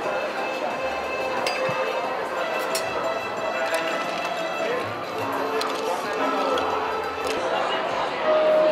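Busy bar ambience of crowd chatter and background music, with a few sharp clinks of ice and glass as drinks are poured over ice and stirred with a bar spoon.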